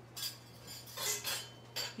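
Nested metal biscuit cutters clinking against each other a few times as they are pulled apart.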